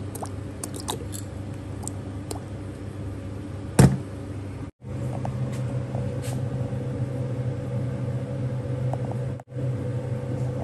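A steady low hum of a kitchen appliance with a few light clicks, and one loud metal knock just before four seconds in as the pan of raw morning glory and pork is handled on the stove. The sound cuts out completely for a moment twice, at edit points.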